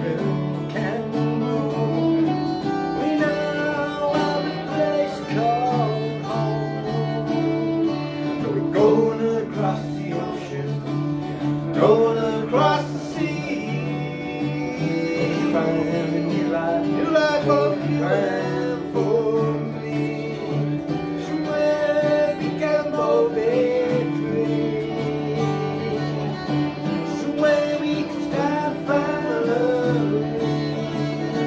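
Two acoustic guitars strumming chords under a man's singing voice.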